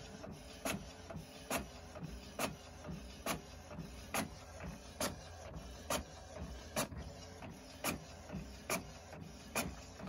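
HP Photosmart Plus inkjet printer printing a picture, slowly: a steady low mechanical whir with a sharp click a little under once a second.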